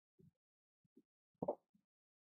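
Near silence, broken by one brief soft low sound about one and a half seconds in.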